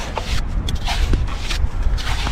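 Small hand shovel scraping and digging in damp beach sand, down in a razor clam's burrow, in short irregular scrapes over a steady low rumble.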